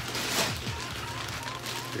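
Thin plastic shopping bags rustling and crinkling as they are picked up and lifted, over quiet background music.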